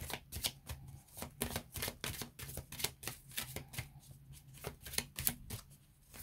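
A deck of oracle cards being shuffled by hand: quick, irregular papery snaps and slides of cards, several a second.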